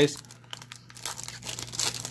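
Foil trading-card pack wrapper crinkling and tearing as it is opened by hand. The crackling gets louder near the end.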